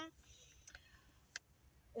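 Near silence in a quiet car interior, broken by one faint click a little past halfway.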